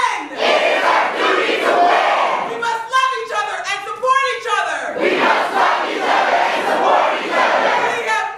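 Call-and-response protest chant: a large crowd shouts a line back in unison, a single woman's voice shouts the next line, and the crowd answers again, loudly.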